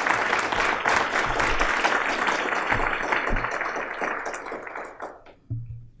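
Audience applauding, a dense patter of many hands that thins out and dies away about five seconds in.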